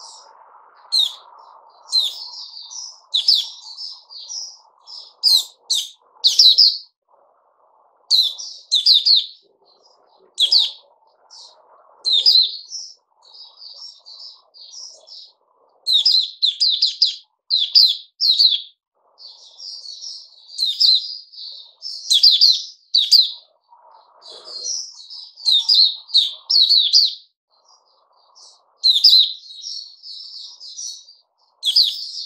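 Caged white-eye (mata puteh) singing: bursts of rapid, high chirping phrases, loud and close, repeated again and again with brief pauses.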